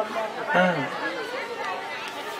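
Only speech: a short spoken "haan" and low, overlapping voices, quieter than the lecture around them.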